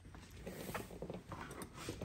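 Faint handling noise: scattered light clicks and rustles.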